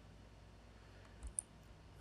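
Near silence with a single faint computer mouse click about one and a half seconds in.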